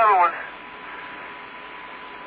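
Hiss of the Apollo 16 lunar-surface radio link in a pause between transmissions, with a faint steady high tone running through it.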